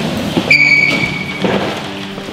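A high, sharp squeal about half a second in, lasting about a second, like a chair leg scraping on the floor, over scattered shuffling and music underneath.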